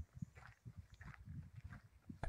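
Near silence with a few faint, soft, irregular footfalls on a dirt path.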